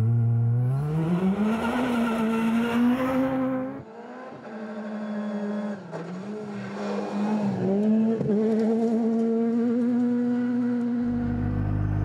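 Ford Fiesta rally car accelerating hard from a standing start, its engine note rising steadily over the first few seconds. From about four seconds in, the engine runs at steady high revs with small rises and dips as it drives the gravel stage.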